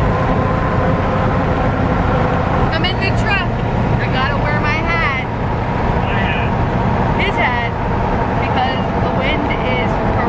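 Steady road and engine noise inside the cab of a moving vehicle at highway speed, with unclear voices talking over it from about three seconds in.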